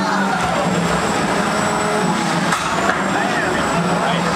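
Small combat robots' electric motors running with a thin high whine as they drive and fight, over crowd chatter; a single sharp knock just before three seconds in.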